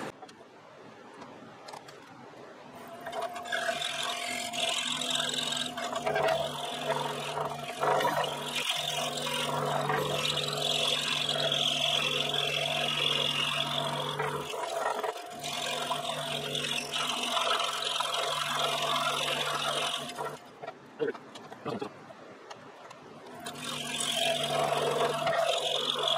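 Scroll saw fitted with a #12 blade cutting an interior cut in a 1.5-inch-thick old pine blank: a steady motor hum under the rasp of the reciprocating blade in the wood. It starts about three seconds in, falls quiet for about three seconds near twenty seconds in, then resumes.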